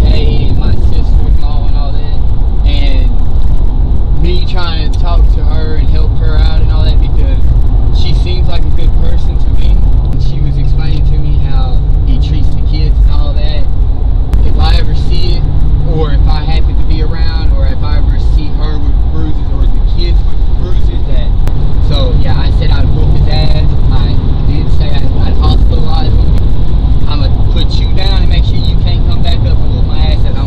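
Car cabin road and engine noise, a strong steady low rumble while the car is driving, with a man's muffled voice talking over it.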